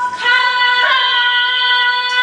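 Ching, Thai finger cymbals, ringing with long steady tones. A fresh strike about a fifth of a second in adds a cluster of higher ringing tones, under a female voice holding a long note.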